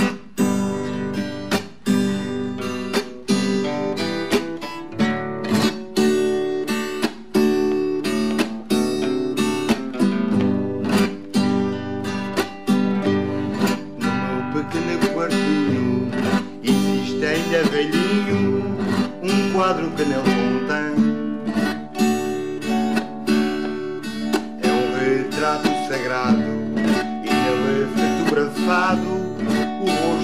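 Two nylon-string classical guitars played together, strummed in a steady, even rhythm.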